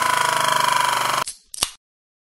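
Logo sound effect for a channel outro: a held, rapidly pulsing tone that cuts off suddenly a little over a second in, followed by one short sharp click.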